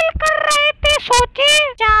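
A high-pitched cartoon girl's voice in quick, sing-song syllables, its pitch rising and falling.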